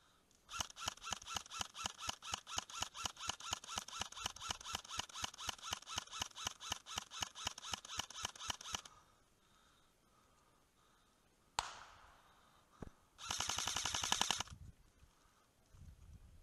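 Airsoft gun firing: a long, even run of rapid shots lasting about eight seconds, then two single shots and a short, faster burst near the end.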